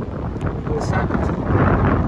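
Wind buffeting the microphone over the low, steady rumble of the Zotye Z8's engine idling.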